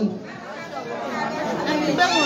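Chatter of many people talking at once, a jumble of overlapping voices in a crowded room.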